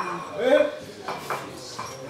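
Plates and cutlery clinking on a lunch table, with several short clicks, over people talking; one voice stands out briefly about half a second in.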